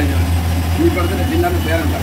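Indistinct voices talking over a steady low hum of kitchen machinery.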